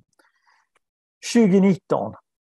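A man's voice: a pause of about a second, then he starts speaking again.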